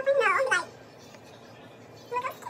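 A person's short, high-pitched, whining squeal lasting about half a second at the very start.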